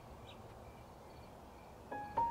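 Faint steady outdoor-style ambience with a few soft bird chirps. A piano note comes in near the end.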